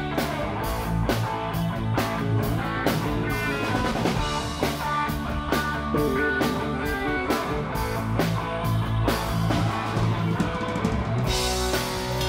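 Live rock band playing: electric guitars, keyboard and drum kit with a steady beat, and a cymbal crash near the end.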